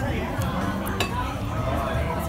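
Cutlery clinking against a plate: a faint tap, then one sharp clink about halfway through, over background voices.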